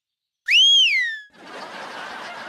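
A woman's loud catcall whistle: one whistle that glides up in pitch and then falls, lasting under a second, about half a second in. A steady hiss follows.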